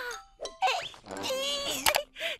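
A cartoon woman's voice making wordless, wavering vocal sounds in two stretches, with a sharp click near the end.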